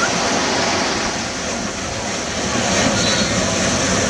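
Shallow ocean surf breaking, a steady rushing noise that dips slightly midway and swells again about three seconds in.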